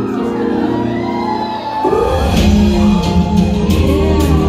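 Loud K-pop music from a concert sound system in a large hall, heard from within the crowd; a heavy bass and drum beat comes in about halfway through. Fans shout and cheer over it.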